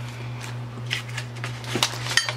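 Plastic-packaged scrapbook embellishments being handled by hand: a few soft crinkles and taps of the cellophane packets, over a steady low hum.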